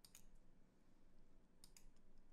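Two faint computer mouse clicks, one just after the start and one near the end, with near silence between.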